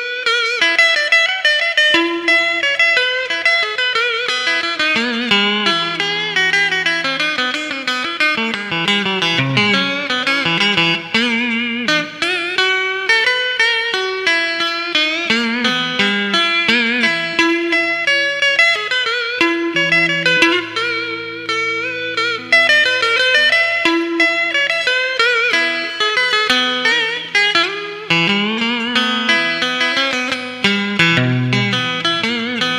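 Solo electric guitar cổ, the Vietnamese scalloped-fret guitar, played in the traditional southern vọng cổ style. It carries a continuous melody of plucked single notes with wide bends and vibrato over long-ringing low bass notes.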